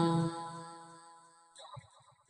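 Chanted Pali verse, the last syllable held on one steady note and dying away over about a second, then near silence.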